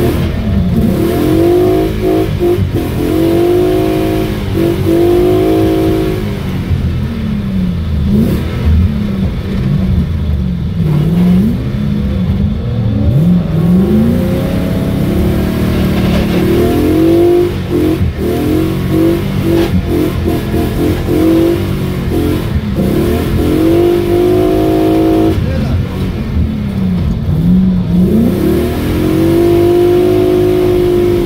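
Car engine heard from inside the cabin, its pitch repeatedly rising and falling as it revs up and drops back over a steady low rumble.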